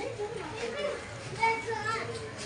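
Children's voices and chatter in the background, with no clear mechanical sound.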